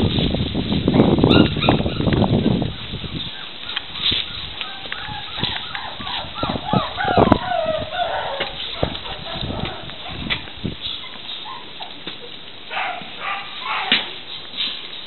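Puppies whining and yelping: high wavering cries through the middle and a run of short yips near the end. A loud low rumble covers the first few seconds.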